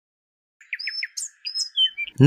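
Bird chirping: a quick run of short, high chirps, some falling in pitch, beginning about half a second in.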